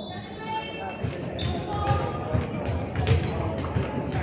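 A ball bouncing repeatedly on a hardwood gym floor, about twice a second, under voices in a large echoing gym.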